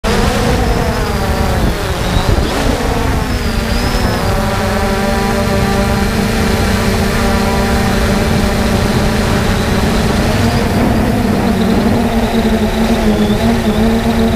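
Brushless electric motors and propellers of a 3DR Solo quadcopter whining, heard from a camera mounted on the drone itself. The pitch slides up and down in the first few seconds as the drone manoeuvres, then holds steady over a low rumble.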